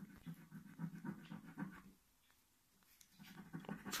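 A coin scratching the latex coating off a paper scratchcard in quick back-and-forth strokes, faint, pausing about two seconds in and starting again near the end.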